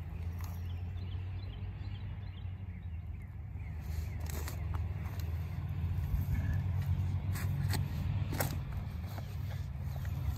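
A spade digging into wood-chip mulch and soil: from about four seconds in, a series of short sharp chops and scrapes as the blade is driven in and the dirt turned up. A steady low rumble runs underneath.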